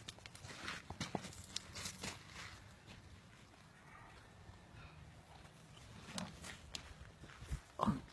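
Close-range scuffling between a man and a large brown bear: scattered crunches and rustles of feet and fur, quieter in the middle, with a louder short sound near the end.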